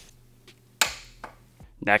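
A click-type torque wrench gives one sharp click about a second in as the Honda CR250's swing-arm pivot bolt reaches its set torque of 65 foot-pounds.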